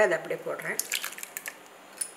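The tail of a spoken phrase, then a cluster of short soft clicks and scrapes as chopped mango is tipped from a bowl into a stainless steel mixer jar.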